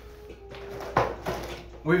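A single knock or thump about a second in, over faint room noise with a low steady hum.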